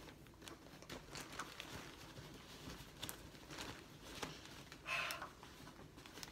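Faint rustling and crinkling of plastic and fabric wrapping as a parcel is handled and opened, with scattered small clicks and a brief louder sound about five seconds in.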